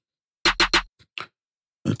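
Hard-clipped snare drum sample played back several times in quick succession about half a second in, followed by two faint short clicks.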